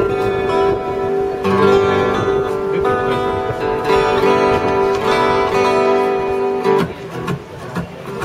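Acoustic guitars strummed into microphones for a sound check, a chord ringing and re-strummed several times. The playing drops away about seven seconds in, then picks up again at the end.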